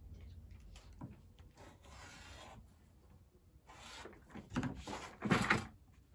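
Rotary cutter drawn through layered fabric on a cutting mat, a rasping stroke about a second and a half in, then louder rubbing and handling noises near the end as the cut pieces are picked up.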